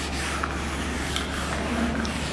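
Whiteboard eraser rubbing back and forth across a whiteboard in repeated strokes, wiping off marker writing.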